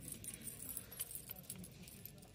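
Faint metallic jingling and light clicks of clothes hangers shifting on a store clothing rack as dresses are pushed along the rail.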